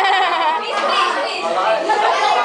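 Many young voices of school students talking over one another in a loud, steady classroom chatter.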